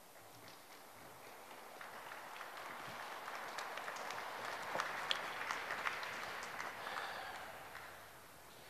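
Audience applauding: a soft clapping that swells over the first few seconds and dies away near the end.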